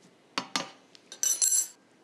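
Two light knocks, then about a second in a short run of bright, ringing clinks: a ceramic dessert plate and cutlery being set down on a kitchen counter.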